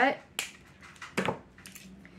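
The small plastic piece holding a plastic grape slicer shut is cut with a sharp snip, followed about a second in by a louder plastic clack as the slicer is handled.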